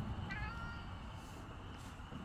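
A Siamese cat gives one short, faint, high-pitched meow.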